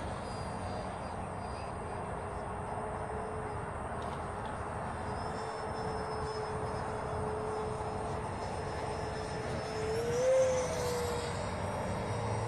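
Radio-control sport jet flying overhead: a steady whine over a hiss. About ten seconds in, the pitch and loudness rise briefly, then ease off.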